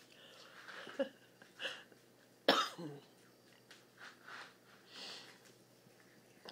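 A person coughs once, sharply, about halfway through, with a few quieter short noises around it.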